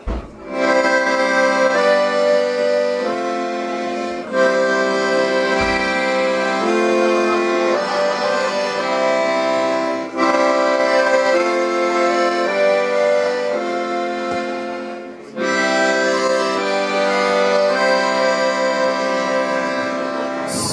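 Solo accordion playing an instrumental break between sung verses: sustained chords that change about once a second, with a short gap about three-quarters of the way through.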